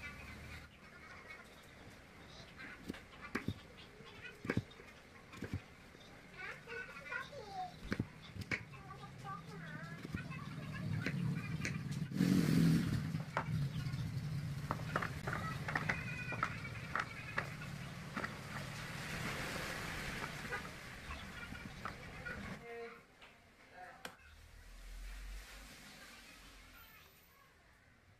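Kitchen knife slicing carrots on a wooden cutting board: a run of sharp taps over the first several seconds. After that a steady low hum and faint voices carry on in the background until they cut off abruptly near the end.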